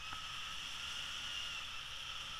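Steady rush of airflow across the action camera's microphone during a paraglider flight: an even hiss.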